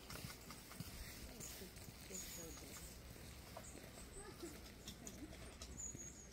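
Small songbirds in bare trees giving brief, thin, very high-pitched calls every second or so, faint, with a few soft knocks between them.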